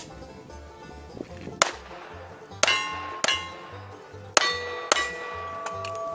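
Cowboy action shooting: about five sharp gunshots, each followed by a steel target ringing as it is hit. Banjo music with a steady beat plays underneath.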